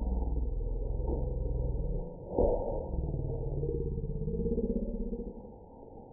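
Slowed-down sound of slow-motion footage: a deep, muffled, drawn-out rumble with nothing high-pitched left in it. A single thump comes a little over two seconds in, and a low, voice-like tone slides up and down in the second half before the sound drops away near the end.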